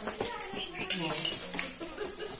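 Several sharp clinks and knocks of metal against glass, as a metal snake hook and the bottles in stacked plastic crates are knocked about.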